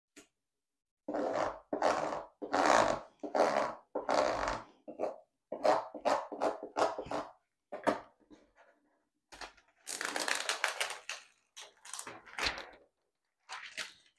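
A plastic scraper rubbed back and forth over clear hot-fix tape pressed onto a rhinestone template, making a run of scratchy swishing strokes about two a second. About ten seconds in comes a crackling stretch, as the sticky tape is peeled up with the rhinestones stuck to it.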